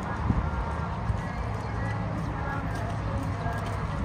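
Footsteps of a large group walking on pavement, shoes clicking and shuffling irregularly, under a steady murmur of many voices.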